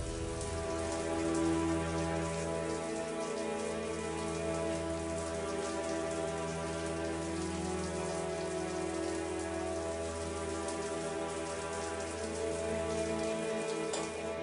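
Shower water spraying steadily against a glass cubicle, a fine even pattering, under a soft background score of long held tones.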